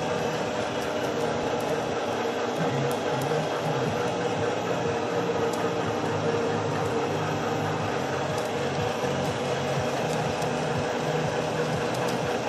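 Metal lathe rough-turning a metal shaft: steady machine running with the cutting noise and a low, even pulsing rhythm throughout.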